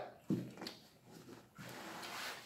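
Soft eating sounds at the table: a short hummed "mm" about a quarter second in and a few faint mouth clicks, then a soft breathy rustle near the end.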